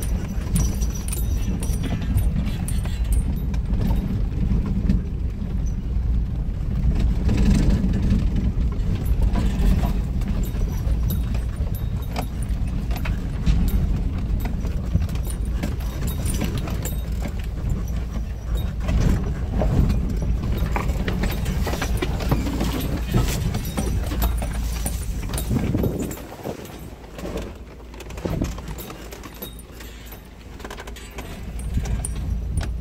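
UAZ 452 van driving slowly down a rough dirt track: a steady low engine and drivetrain rumble under frequent knocks and rattles from the body and loose items as it goes over bumps. The low rumble drops away about four seconds before the end, leaving quieter rattling.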